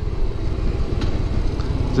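Harley-Davidson V-twin engine running steadily at highway speed, mixed with steady wind rush on the moving bike.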